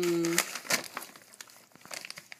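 Wrapping paper crinkling and tearing in short crackly bursts as a dog rips into a wrapped present. At the start a voice holds one steady note, which stops less than half a second in.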